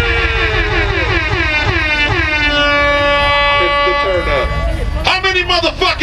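Live hip-hop concert heard through a big outdoor sound system: one long held note that slides down and then holds steady for a few seconds over a deep bass rumble. Shouted, voice-like sounds return about five seconds in.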